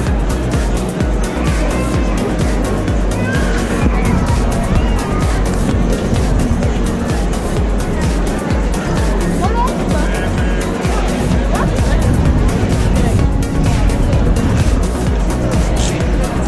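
Music with a steady, driving beat played by a steampunk street-band vehicle built on a Renault 4L, with a strong low pulsing throughout.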